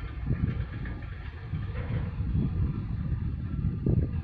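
Uneven, gusting low rumble of wind buffeting the microphone on an open quay, over a faint steady hum.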